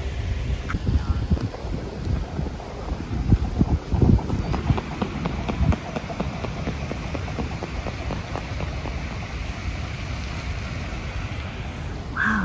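Wind buffeting the microphone in uneven gusts and thumps. A steady hiss joins in about halfway through.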